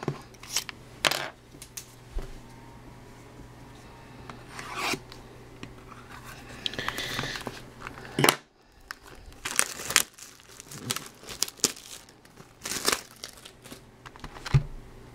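Plastic shrink wrap on a sealed trading-card box being slit with a pen and torn off, in short irregular rips and crinkles.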